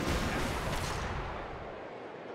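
Transition sound effect: a rushing boom that starts suddenly and fades away over about a second and a half.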